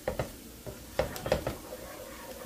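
A utensil stirring a thick flour-and-oil roux with onions in a nonstick skillet, scraping and knocking against the pan a few times: twice at the start, then a quick cluster about a second in.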